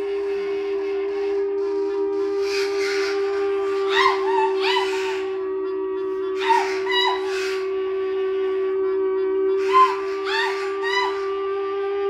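Free-improvised music from clarinet, electric guitar and voice with objects: one long held note runs throughout, while clusters of short, high, upward-swooping squeaks come in about four seconds in, again around six and a half seconds, and again near ten seconds.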